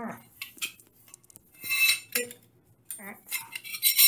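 Metal grab bar clinking and scraping against porcelain wall tile as it is held up and positioned, with a short cluster of sharp clinks a little under two seconds in.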